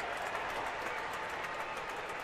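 Ballpark crowd cheering and applauding, a steady din of many voices with scattered handclaps.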